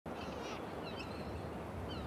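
Outdoor ambience: a few short bird chirps over a steady low background noise.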